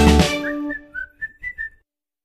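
Background music track ending: the band stops just after the start and rings away, then a short whistled tune of about six quick notes, cutting off to total silence near the end.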